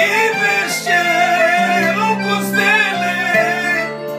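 A man singing a Romanian song in a wavering melody line, accompanied by a piano accordion holding steady chords under the voice.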